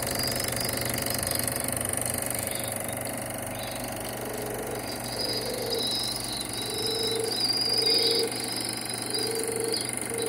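Chinon Super 8 sound film projector running, a steady rapid mechanical clatter from its motor and film transport.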